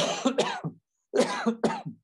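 Two short throaty bursts from a man's voice, each a quick double pulse, about a second apart.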